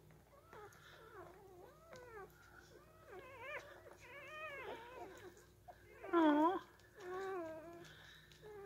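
Week-old Shetland sheepdog puppies whimpering, a string of short, wavering, high-pitched whines, with two louder ones near the end.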